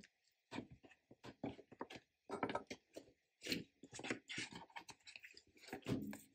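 Paper sticker sheets being handled and shuffled on a desk: a steady run of soft, irregular rustles and small taps.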